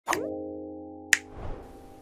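Animated logo intro sting: a quick pop sliding upward in pitch at the start, then a held musical chord that slowly fades, with a sharp click about a second in and a soft low thud just after.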